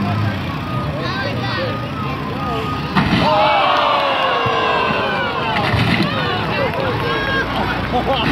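A large tracked excavator running. About three seconds in, its steel bucket comes down on a Jeep Cherokee's roof with a sudden loud crunch, followed by a few seconds of falling-pitched squealing as the roof crumples.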